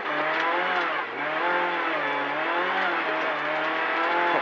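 Renault Clio N3 rally car's four-cylinder engine heard from inside the cabin, pulling uphill under load, its note wavering up and down with the throttle and dipping briefly about a second in and again a little after two seconds.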